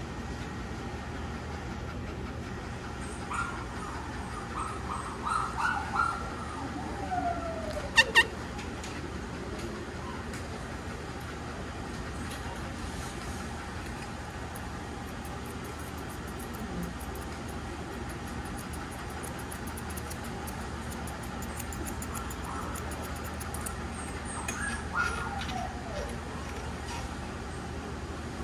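Grooming shears snipping repeatedly at a Scottish Terrier's head coat, heard as fine ticks over a steady background hum. A few short whines slide down in pitch, and two sharp clicks about eight seconds in are the loudest sounds.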